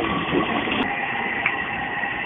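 Train station platform ambience: the steady running noise of a train at the platform, with a thin high tone held through it.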